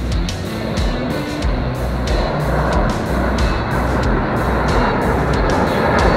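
Military jet aircraft flying over in formation: engine noise grows louder through the second half, under music with a steady beat.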